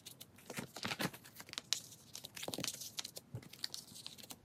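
Photocards being slid out of and pushed into the clear plastic pockets of a binder page: an irregular run of soft crinkles, rustles and light clicks.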